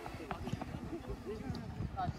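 Several football players running on artificial turf: quick, irregular footsteps, with short calls and shouts from the players.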